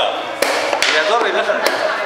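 Chess pieces knocked down on the board and the digital chess clock's buttons hit during a blitz game: three sharp knocks, about half a second in, just under a second in and a little past a second and a half.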